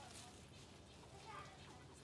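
Near silence, with a faint voice in the background about one and a half seconds in.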